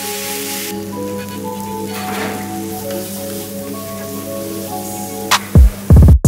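Gun chicken (a country-chicken leg in masala gravy) sizzling on a hot griddle, a steady hiss of bubbling gravy. Background music with held notes plays over it, and a heavy bass beat comes in near the end.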